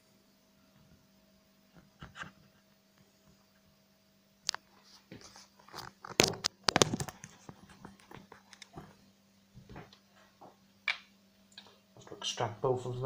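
Scattered clicks and knocks from handling a plastic gold pan and the phone filming it, with a cluster of louder knocks about six to seven seconds in as they are moved, over a faint steady hum.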